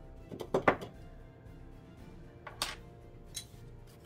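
Soft background music with a few short knocks and taps of wooden pencils being handled and set down on a tabletop. The loudest is a pair of knocks about half a second in, and smaller taps follow later.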